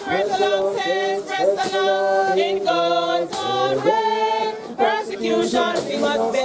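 A small group singing a hymn unaccompanied, several voices together holding long notes.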